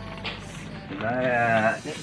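A drawn-out, wavering, voice-like call about a second in, over what sounds like background music.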